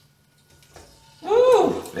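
Quiet room tone with a faint steady hum, then a man's voice speaking a short phrase about a second in.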